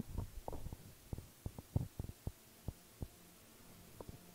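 Faint, irregular low thumps, about a dozen in quick uneven succession, over a low steady hum.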